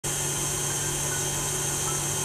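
Electric stand mixer running at speed, its whisk beating egg whites into a stiff, glossy meringue in a stainless steel bowl: a steady motor hum with the whirr of the whisk through the foam.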